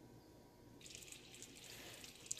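Near silence, then from about a second in a faint hiss of sugar, corn syrup and water syrup simmering in a stainless steel pot.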